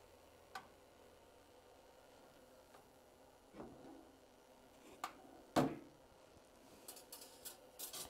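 Small enameling kiln (Paragon SC-3) being opened and shut while a steel mesh trivet carrying a copper piece is handled with a firing fork: faint clicks and a scrape of metal on the kiln, with one sharper knock about five and a half seconds in.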